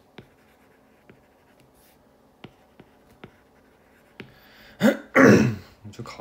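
A stylus tip ticking lightly on a tablet's glass screen as words are handwritten: a few sparse, faint taps. Near the end comes a loud cough-like vocal burst in two parts.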